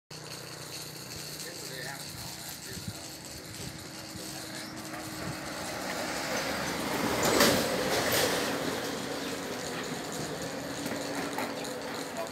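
Outdoor roadside ambience with indistinct voices. A louder noise swells and fades about seven to eight seconds in.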